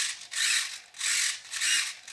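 Small RC servos in a foam glider whirring as the transmitter stick is moved, driving a control surface back and forth: four short whirs in quick succession, the sign that the radio link and servos are connected and working.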